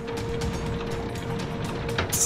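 Ratcheting gear sound effect, regular clicking about four or five times a second, for the spike press lowering, over background music with a steady held tone.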